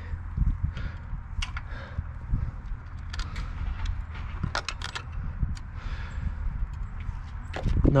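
Scattered light clicks and taps of pliers and metal hardware being worked at a steel boat-trailer winch post, with a cluster of sharper clicks about three to five seconds in, over a steady low rumble.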